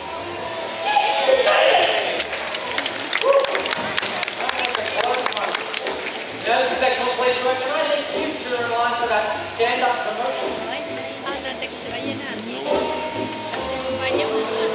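Voices over music from the show's sound system, with a run of sharp clicks through the first half.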